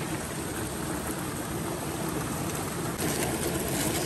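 Shallow rocky stream trickling steadily over stones.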